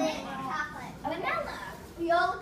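A young girl's voice in short, unclear bits of speech, the start of her answer to a question.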